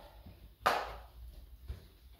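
A single sharp knock of something hard being struck or set down, about two-thirds of a second in, then a faint hum.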